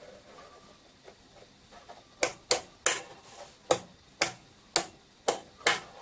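Front-panel rotary selector switches of an Accuphase E-206 integrated amplifier being turned through their positions. After a short quiet start there are about eight sharp detent clicks, roughly two a second. It is a heavy switch with firm pushback at each step.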